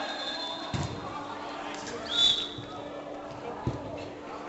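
Football kicked on indoor artificial turf: two dull thuds of the ball being struck, one near the start and one near the end, with a short, high whistle-like tone about two seconds in as the loudest sound, over players' distant voices.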